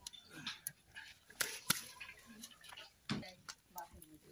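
Faint clicks and taps of small pump fittings being handled and fitted onto a pump body, with a few sharp clicks scattered through.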